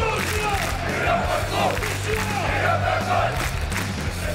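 A stadium crowd of football supporters chanting together in unison, over background music with a steady bass line.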